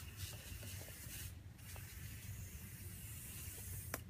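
A Buck Bomb aerosol scent can spraying with a steady hiss, stopped briefly about a second and a half in and then sprayed again. The nozzle is being worked on and off by hand rather than locked down to empty the can.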